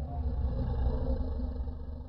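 A steady low rumble with faint held tones above it, easing off slightly near the end.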